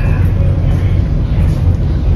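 Steady low rumble of a passenger ferry underway, heard from inside its lounge.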